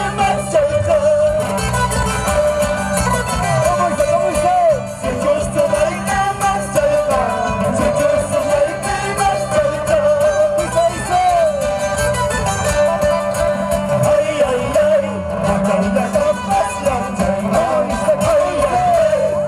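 Live Andean toril music from a string band: strummed acoustic guitars with singing over a steady beat, played loud through a stage sound system.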